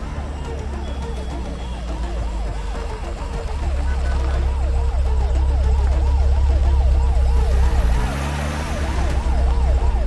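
Police vehicle siren wailing in a fast, even up-and-down yelp, about three cycles a second, over a heavy deep rumble that swells in the middle and has a rising note near the end.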